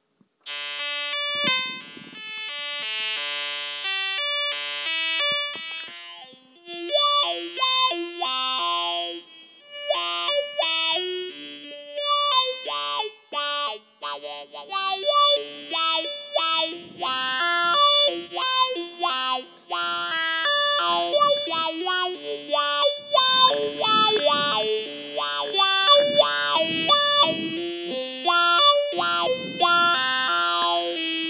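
Arturia MicroBrute analog synthesizer played through a homemade cigar-box talk box: a melody of sustained synth notes, starting about half a second in, sent up a plastic tube into the player's mouth, which shapes them into vowel-like talking tones picked up by a handheld microphone.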